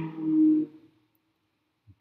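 A man's drawn-out hesitation sound, an 'uhh' held on one steady pitch for under a second, then near silence.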